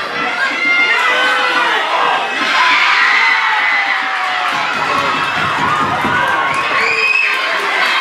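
Players and spectators cheering and shouting as a goal goes in at a women's football match, many high voices overlapping.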